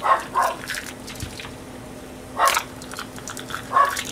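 A dog barking in short bursts: two quick barks at the start, another about two and a half seconds in and one more near the end. A faint steady hum runs underneath.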